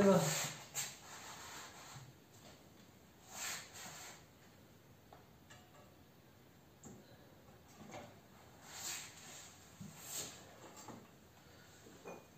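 Quiet handling noises of a motorcycle front wheel being lifted and worked in between the fork legs: brief rubs, rustles and a few light knocks spread across the stretch.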